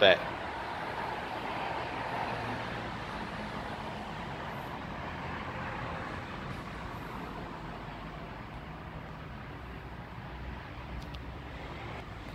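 Steady hiss and low rumble of distant road traffic, a little louder in the first seconds and easing slightly later on.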